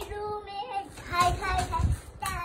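A young girl singing, holding and bending sung notes.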